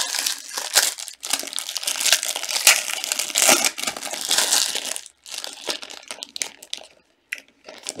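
Foil wrappers of 2018 Panini Prizm Racing card packs crinkling and tearing as gloved hands rip the packs open and pull the cards out. The crackling is dense for the first five seconds or so, then thins out, with a brief pause near the end.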